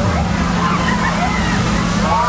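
Beach Jumper fairground ride running, a steady hum and low rumble of its machinery under the gliding calls and shrieks of riders' voices.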